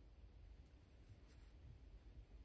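Near silence, with faint rubbing of a watercolour brush working paint in a small palette pan, a couple of light strokes.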